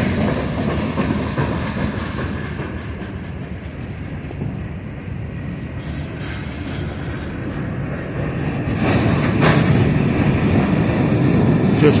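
Freight cars rolling past, a steady rumble of steel wheels on rail. It eases off around four seconds in and builds again after about nine seconds, with a brief high wheel squeal near nine seconds.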